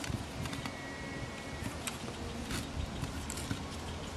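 A few faint, sharp clicks and taps of small metal parts as the float and its hinge pin are worked into place on a Holley 2245 carburetor's top, over a low steady background hiss.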